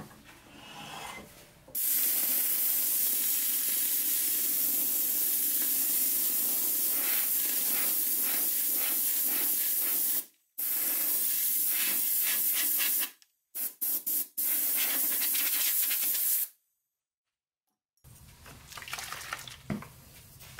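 Compressed-air blow gun hissing in long blasts as it clears wood shavings and dust off a turned oak hollow form. The air cuts off briefly twice, with a few quick short bursts in the middle, before a final blast stops.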